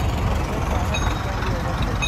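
Steady low rumble of a vehicle's engine and tyres, heard from on board as it rolls slowly over freshly laid, sticky hot tar.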